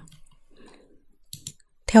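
A pause in a woman's spoken narration, with a faint breath and a few small mouth clicks before her voice comes back in near the end.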